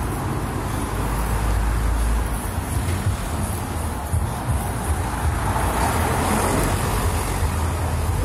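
City street traffic: cars going by in a steady wash of road noise over a low rumble, with one vehicle passing louder about five to seven seconds in.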